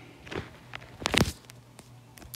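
A few light taps of a finger on an iPad's glass screen, the strongest a quick cluster about a second in, over a faint low hum.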